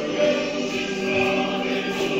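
Background music of choral singing in long held notes.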